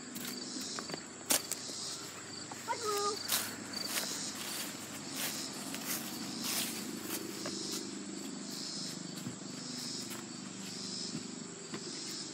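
Insects chirping steadily: a continuous high trill with regular chirp pulses repeating about once a second. Footsteps on grass and light handling knocks come and go.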